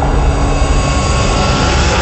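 Logo-intro sound effect: a loud, steady rushing rumble with a deep low end, like a jet engine.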